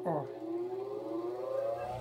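Electric motor of a homemade bench grinder with a white grinding wheel switched on and spinning up, its whine rising steadily in pitch as it comes up to speed.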